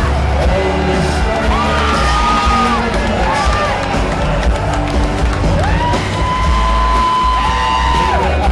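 Live rock band playing in a concert hall, recorded from the audience, with heavy bass and long held melody notes that swoop up and fall away.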